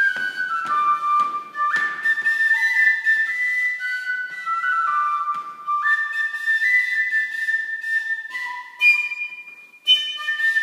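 Penny whistle (tin whistle) playing a slow melody of held notes that step up and down, with a brief break in the tune just before the end.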